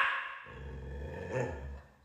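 A dog's bark fading away at the very start, then a faint low rumble that cuts off abruptly near the end.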